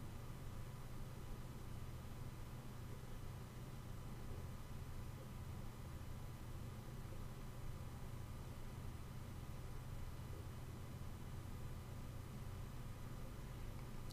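Faint steady low hum with a light hiss, unchanging throughout: background room tone with no distinct event.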